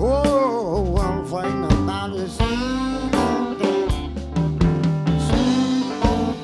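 Live blues band: a lead electric guitar plays bending notes over drums and bass.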